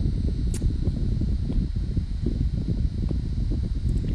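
Steady low rumble of background noise, with one short sharp click about half a second in.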